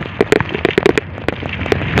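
Rapid, irregular crackling clicks and rattles over a rushing noise, from a bicycle being ridden and the camera shaking on it, with wind on the microphone.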